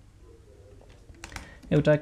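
A few quick keystrokes on a computer keyboard, a short cluster of clicks about a second in, as a word of code is typed.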